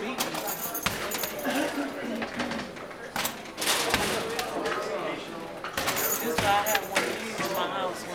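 Basketballs knocking against the backboard, rim and cage of an arcade basketball shooting machine, several separate knocks, over voices chattering in the room.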